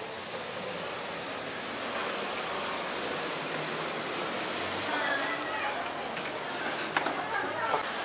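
Steady outdoor street noise with faint, indistinct voices about halfway through.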